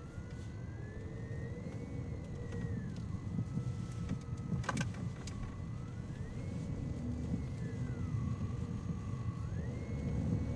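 Car interior road and engine rumble while driving, with a distant siren wailing slowly up and down. A single sharp click sounds just before five seconds in.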